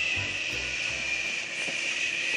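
A woman's long, steady "shhh", shushing a baby to soothe and calm her.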